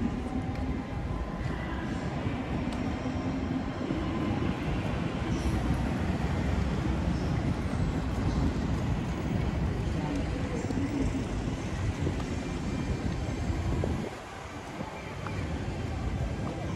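Low, steady rumble of passing vehicles on a city street, which dies down shortly before the end.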